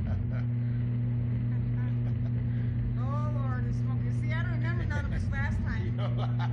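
A steady low hum runs under the riders' voices in the SlingShot ride capsule: one drawn-out vocal call about three seconds in, then a quick run of short laughs.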